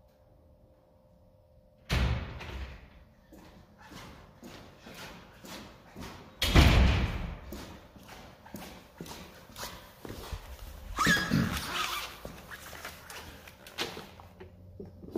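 Handling and movement noise close to the microphone as a person comes up to the camera: a sudden thump about two seconds in, then irregular knocks and rustles, with louder bumps about six and a half and eleven seconds in.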